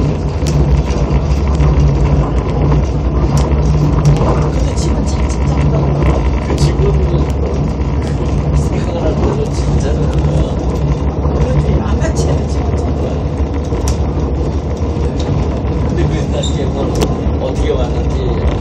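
Commuter diesel railcar (CDC) running along the line, heard from inside the carriage: a steady engine drone over a low running rumble, with scattered sharp clicks from the wheels and track.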